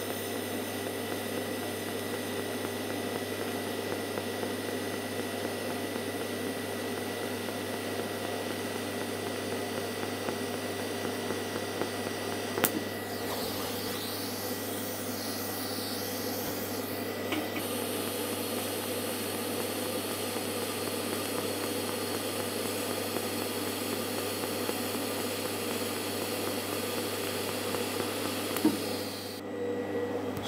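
Pulsed DC TIG welding arc on an R-Tech TIG261 inverter welder, hissing steadily as a 4 mm stainless steel butt joint is fusion-welded without filler, over a steady low hum. The sound stops shortly before the end.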